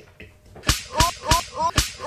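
Rapid repeated whipping lashes, about three a second, beginning about two-thirds of a second in. Each sharp crack is followed at once by a short rising high note.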